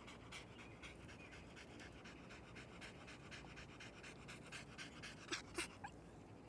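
Small dog panting faintly and rapidly, about four breaths a second, with two brief louder noises near the end.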